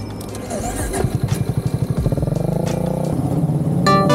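Honda CB400SS single-cylinder engine pulling away, its beat quickening and its pitch rising steadily for about two seconds. Music comes in at the very end.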